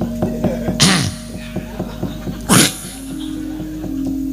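Soft gamelan accompaniment to a wayang kulit shadow-puppet show: held notes under a run of light, quick knocks. Twice it is broken by a short, loud hissing burst that sounds much like a sneeze, about a second in and again about two and a half seconds in.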